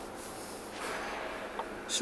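Rustling handling noise of a handheld camera being jostled as it falls, with a short noisy rush about a second in.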